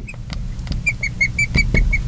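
Felt-tip marker squeaking on a glass lightboard as a word is written: a quick, even run of short high squeaks beginning about a second in, with light clicks of the pen tip on the glass.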